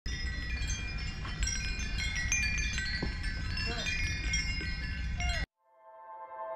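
Hanging metal-tube wind chimes ringing, many high tones struck at random and overlapping, over a low background rumble. The sound cuts off suddenly near the end.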